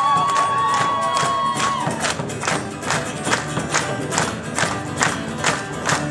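Live Celtic folk-rock band playing: acoustic guitar and bass under an even frame-drum beat of about two to three strokes a second. A long held vocal note or shout runs over the first two seconds.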